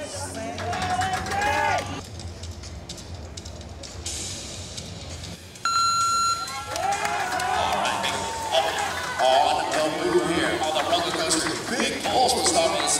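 Loud shouting from several voices, then a single electronic beep lasting about a second, about five and a half seconds in, followed by more loud yelling from crowd and onlookers as the rope pull gets under way.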